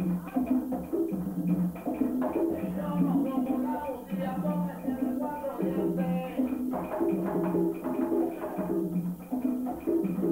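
Cuban rumba percussion played live: tumba, segundo and quinto conga drums in a repeating, interlocking pattern of low open tones, over the hard wooden clicks of clave and catá.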